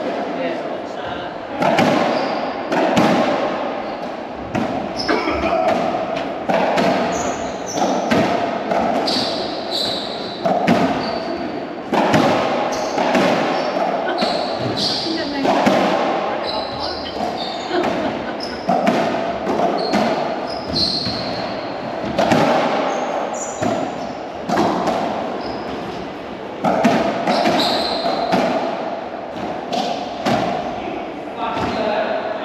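Racquetball play: sharp hollow pops of a rubber ball struck by racquets and hitting the court walls, about one every second or so, each ringing on in the enclosed court's echo.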